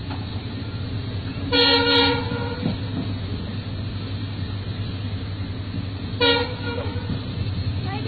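A passenger train running with a steady low rumble, heard from inside the coach, with two blasts of a train horn: a longer one about a second and a half in and a short one a little after six seconds.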